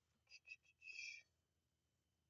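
A woman whispering a few short, faint syllables under her breath in the first second or so.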